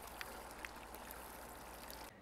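Faint trickle of washing-machine grey water flowing out of a drain tube into a tree's dirt basin, with a few soft ticks of drips.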